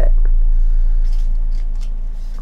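Pages of a sturdy photo book being turned by hand: a few faint, short paper rustles and flicks in the first second or so, over a steady low hum.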